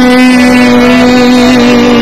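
Male singing holding one long, steady note in a Hasidic melody, without a break.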